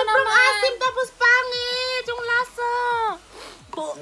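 A young woman's high-pitched voice in long, drawn-out wordless cries and whines, several notes falling away at the end, in disgust at a foul-tasting jelly bean.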